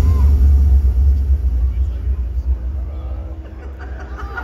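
Deep rumble from a stage show's sound system, slowly fading away, with faint voices over it.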